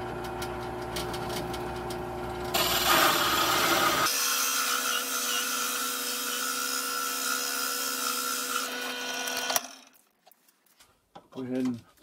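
A drill press running with a 1-1/4-inch hole saw, which bites into the wood about two and a half seconds in and cuts down through the 3/4-inch board with a loud rasping noise over the motor hum. The cutting stops suddenly about two and a half seconds before the end.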